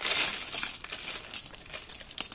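Small plastic Lego pieces tipped out of a plastic bag, clattering onto a board. A dense rattle of clicks, loudest in the first half second, thins to scattered clicks as the last pieces settle.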